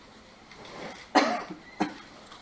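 A man coughing, clearing his throat: a longer cough a little over a second in, then a short one near the end.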